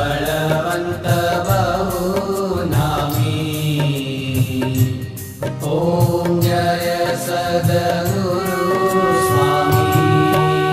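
Devotional aarti music: a sung hymn over instruments, with evenly repeated percussion strikes throughout. From about eight and a half seconds in, steady held instrumental notes come in.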